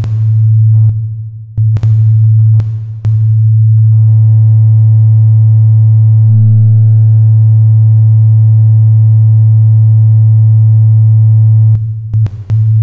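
Electronic sine-wave music: a loud, steady low synthesizer tone is held throughout, with sharp drum-machine hits over the first three seconds. The hits then drop out and a higher, sustained tone with overtones holds for about eight seconds. A short extra note sounds in the middle, and the hits return just before the end.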